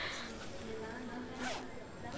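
Zipper on a handbag being pulled open, with a short sharp rasp about one and a half seconds in.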